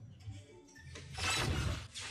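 Electronic soft-tip dartboard machine playing its triple-hit sound effect, a crashing, shattering-glass-like burst starting about a second in, as a dart scores a triple 15.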